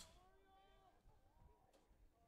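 Near silence: faint distant voices calling out, over a low background rumble.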